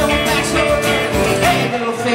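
Live band playing an upbeat song on acoustic and electric guitars over a steady low beat. The low beat drops out near the end while the guitar chords ring on.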